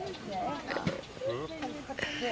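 Indistinct human voices, quiet talk and vocalising with sliding pitch that is too unclear to make out as words.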